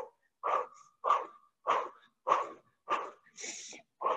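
A person breathing hard during a cardio exercise: six short, sharp breaths about every 0.6 s, in time with the movement, the last one a longer hissing breath.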